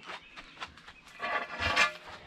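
Large outdoor tiles being handled on a concrete step: a few light clacks, then a louder scraping rub of tile on concrete about a second and a half in.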